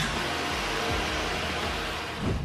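A steady rushing hiss of noise that eases off near the end, over faint background music.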